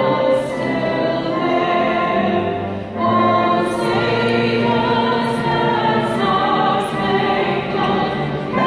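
Live singing with accompaniment: long held notes in phrases, with a short break about three seconds in and another near the end.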